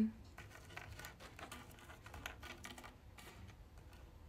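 Light, irregular clicks and scrapes of small puffed rice-cake bites being picked up, set down and slid across a hard table top by fingertips.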